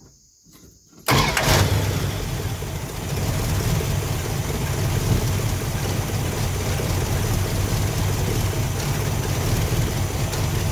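Chrysler V8 with a Carter Thermoquad carburetor starting about a second in, then running steadily at idle. With the idle mixture screws a turn and a half out it is running really rough, with hardly any vacuum.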